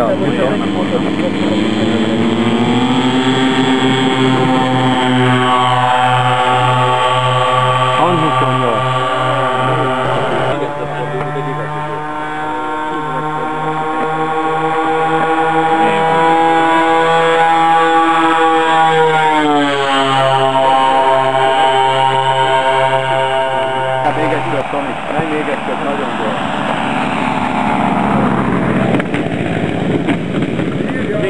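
Engines and propellers of a twin-engine radio-controlled Antonov An-28 model running hard in flight. Their pitch climbs over the first few seconds, holds steady with a regular pulsing in the low hum, then drops sharply about two-thirds of the way through.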